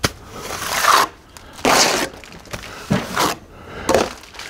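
A darby scraping across a wet stucco base coat to flatten it, in a few strokes: one long stroke lasting about a second, then shorter ones.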